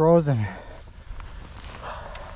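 A man's voice that breaks off about half a second in, followed by faint, steady low background rumble.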